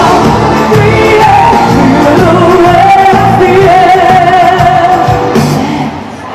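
Live pop band with a woman singing the lead vocal into a microphone, a held, wavering melody over a steady beat; the music dips in loudness at the very end.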